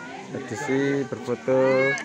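A man calling out "hai" twice in long, drawn-out, steady-pitched calls, the second one louder.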